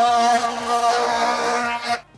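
Oscillating multi-tool sawing through 110 mm plastic soil pipe: a steady buzz that stops suddenly at the end as the cut is finished.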